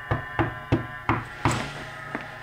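Five knocks on a wooden door in a quick even series, about three a second.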